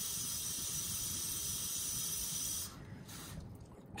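Kitchen faucet running a stream of tap water into the plastic water tank of an iLife Shinebot W450 robot mop, a steady hiss. It cuts off suddenly about two-thirds of the way through as the tap is shut off at the tank's minimum fill line.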